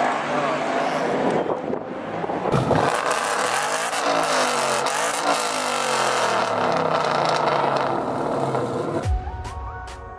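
Car engine revving, its pitch rising and falling several times and growing loud abruptly a couple of seconds in. Music with a steady beat comes in near the end.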